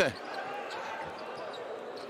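Courtside sound from a basketball game: a steady crowd hum with a basketball bouncing on the hardwood court.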